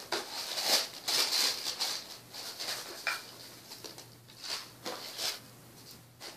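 Tissue paper rustling and crinkling in short, irregular bursts as it is unfolded from around the contents of a box.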